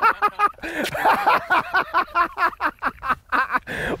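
Men laughing and exclaiming excitedly in quick, repeated bursts.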